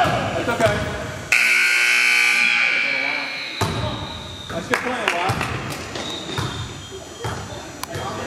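Gym scoreboard buzzer sounding once, a steady high-pitched blare for about two seconds that starts sharply a little over a second in, signalling a stop in play. Around it, voices shouting and basketballs bouncing on the court.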